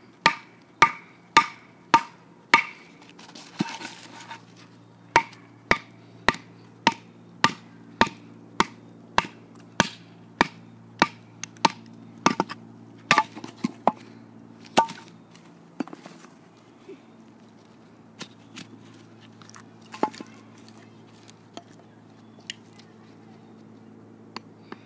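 Wooden baton striking the spine of a Schrade SCHF1 fixed-blade knife, driving it down through a piece of wood: sharp knocks about two a second for the first fifteen seconds or so, then slower, scattered strikes. A faint steady low hum runs underneath from a few seconds in.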